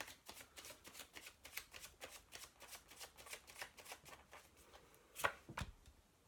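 A deck of tarot cards being shuffled by hand: a fast run of light card clicks, about five a second, then two louder knocks a little after five seconds in.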